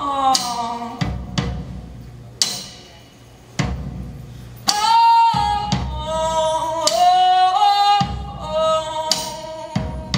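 Live band music: a woman singing long held notes over slow, heavy drum-kit hits about every second and a bit, one note sliding down in pitch just after the start.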